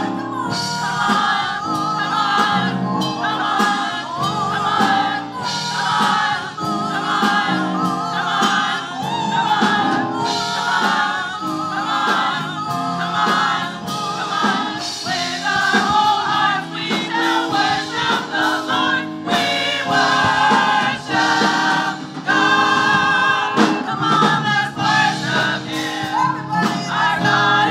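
Mixed-voice church choir singing in parts, the several voices held together without a pause.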